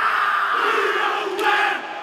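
Rugby team shouting a Māori haka in unison, with a loud stadium crowd behind them.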